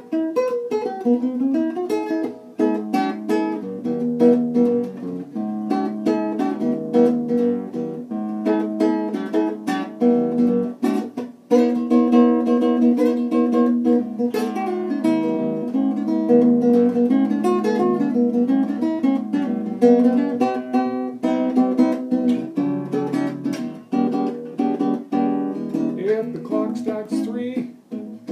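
Acoustic guitar playing a blues instrumental break, with a brief gap about eleven seconds in.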